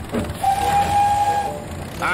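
Animated steam engine's whistle: one steady tone held for about a second, over a hiss of steam.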